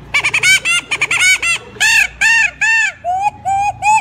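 A man imitating bird calls with his voice, chicken-like and convincingly animal. It starts as a quick run of short rising-and-falling calls, moves to three longer arched calls, and ends with three flatter, level ones.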